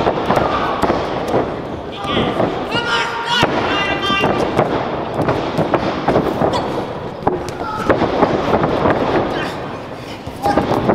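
Pro wrestling ring action: a rapid run of sharp slaps and thuds from wrestlers grappling and hitting the ring, with shouting voices from the small crowd at ringside, loudest a few seconds in.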